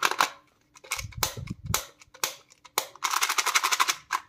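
Plastic candy wrapper crinkling and crackling as it is handled and opened: a string of sharp snaps, then a dense run of crackling about three seconds in.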